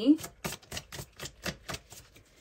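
A deck of oracle cards being shuffled by hand: a quick, even run of sharp card snaps, about six a second, starting about half a second in.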